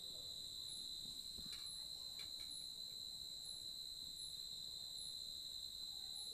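Faint night insect sound: crickets trilling steadily, with a higher chirp repeating about once a second.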